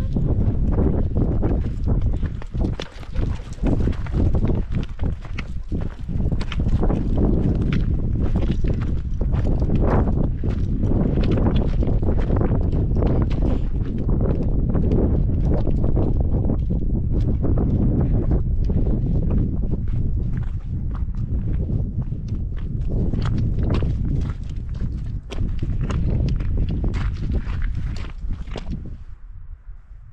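Footsteps on a rocky path: irregular sharp clicks and scuffs of boots and trekking poles on stones, over a steady wind rumble on the microphone. Near the end the sound cuts to a quieter, duller wind.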